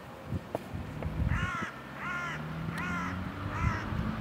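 A crow cawing four times, each caw short and about a second apart, over a low background rumble.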